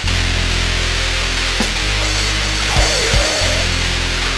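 Powerviolence/grindcore music kicking in abruptly: a loud, dense wall of heavily distorted guitar and bass with drums.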